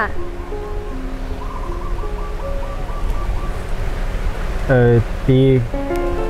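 Soft background music of held tones over a steady low hiss, with a brief spoken line near the end.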